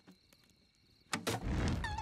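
A campfire suddenly flares up with a loud whoosh about a second in, after a quiet start; it is a cartoon sound effect. A few short, high, sliding squeaky notes follow near the end.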